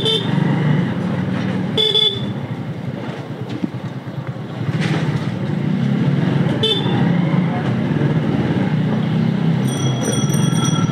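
Motorcycle engine running steadily at low speed, with three short horn toots: one at the start, one about two seconds in and one a few seconds later. A brief high-pitched ringing comes near the end.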